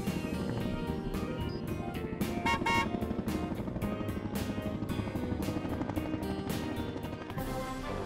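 Cartoon helicopter's rotor chopping steadily over background music.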